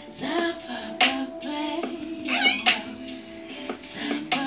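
An improvised, wordless vocal performance: a voice sliding and swooping in pitch, with a high warbling run about halfway through, over sharp percussive hits that keep a loose beat.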